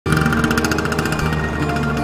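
Background music with held notes, overlaid by a motorcycle engine's rapid, even rattle of about ten pulses a second, strongest in the first second.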